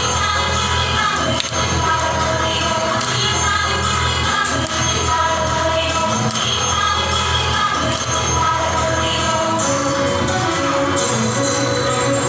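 A Thiruvathirakali song (Thiruvathira pattu) being sung, with the dancers' hand claps keeping time as short, sharp strokes at a steady pace.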